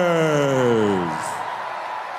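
A long drawn-out shout over the arena PA, sliding down in pitch and dying away about a second in, leaving the steady noise of the arena.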